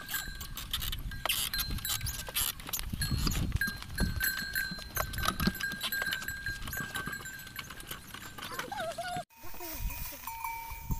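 Wooden cart drawn by a pair of water buffalo, rolling over rough ploughed ground: irregular knocks and clatter from the wooden yoke and cart, a low rumble, and a thin high squeak that comes and goes. The sound cuts off abruptly a little before the end.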